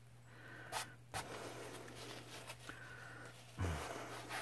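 Fingers rubbing and scraping at a drop of acrylic paint on a stretched canvas, with two sharp taps about a second in. A short breathy vocal sound comes near the end.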